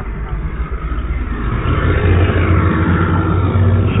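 Car engine running with tyre and road noise as the car moves, heard through the open window: a steady low hum.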